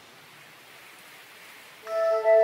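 Faint steady hiss in a lull of ambient meditation music. A new chord of sustained, bell-like ringing tones comes in near the end.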